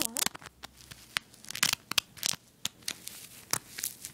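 Close handling noise: irregular sharp rustles and scratches of something brushing and rubbing right against a handheld device's microphone as it is moved.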